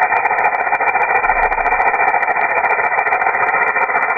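Rattlesnake rattle buzzing steadily without a break, a dense rapid clicking of the keratin rattle segments.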